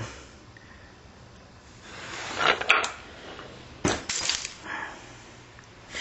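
Small flakes being picked off the edge of a stone Clovis point: a rustle of handling a couple of seconds in, then a sharp crack and a quick run of stony clicks about four seconds in.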